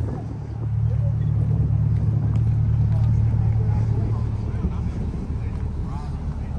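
A Chevrolet C8 Corvette's V8 engine running at low revs: a steady low engine sound that eases off slightly near the end.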